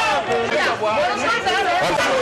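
A crowd of protesters shouting and talking over one another, several voices at once.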